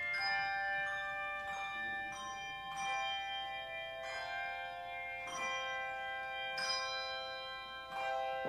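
Handbell choir ringing a slow melody: notes and chords struck about once a second and left ringing, so each overlaps the next.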